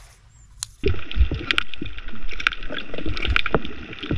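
Savage Gear Super Cast Egi squid jig jerked underwater, its internal weight knocking inside the body: a string of sharp knocks, irregular and roughly two a second, starting about a second in over a rushing underwater water noise. The knocking is the lure's 'knock knock system', a pulse meant to draw squid.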